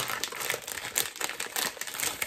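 Plastic packaging crinkling as it is handled: an irregular run of crackles, with a sharp click right at the start.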